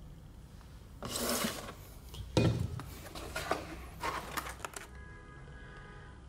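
Handling noise from a diecast model airliner being moved about: a brief rustle about a second in, a sharp knock about two and a half seconds in, then several lighter clicks and taps.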